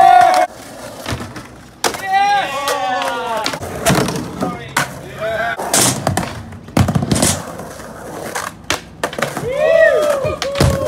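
Skateboard riding on wooden ramps: the board and wheels knock and clack sharply several times. People shout and whoop about two seconds in and again near the end.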